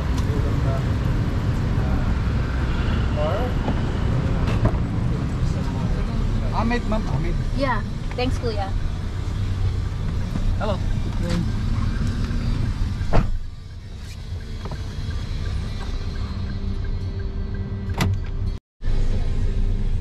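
Low rumble of an idling car at the curb with a few brief, faint voices. About 13 seconds in a car door shuts with a sharp thud, and the sound drops to a quieter cabin hum, with another click a few seconds later.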